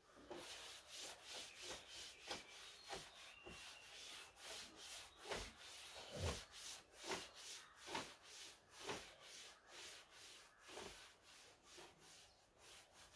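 A cloth wiping a chalkboard, faint repeated rubbing strokes about two a second as chalk writing is erased.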